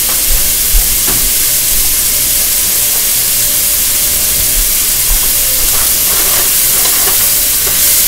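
Chicken, mushrooms and mixed vegetables sizzling steadily in hot oil in a frying pan, with a few faint low thumps.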